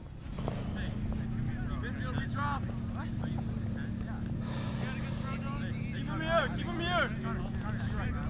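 Voices shouting and calling out across an open field, loudest a little past six seconds in, over a steady low hum.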